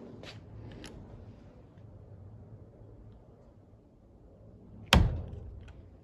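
A single sharp hammer blow about five seconds in, striking a helicoil tang break-off tool to snap the drive tang off an installed thread insert. Before it come a few faint ticks as the tool is set in the hole.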